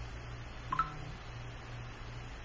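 Room tone: a low steady hum, with one short two-note blip a little under a second in.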